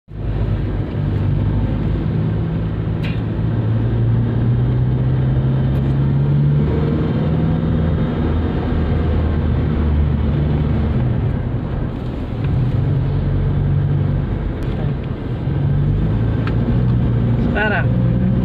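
Car engine and road noise heard from inside the cabin while driving: a steady low hum that shifts pitch a couple of times as engine speed changes.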